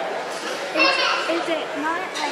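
Children's voices talking indistinctly over a background of chatter, with a high child's voice loudest just before a second in.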